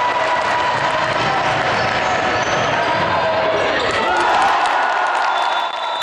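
Home crowd at an indoor basketball game cheering, shouting and clapping, swelling a little about four seconds in.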